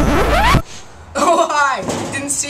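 Electronic music ending in a fast rising pitch sweep that cuts off abruptly about half a second in, followed shortly after by a boy speaking.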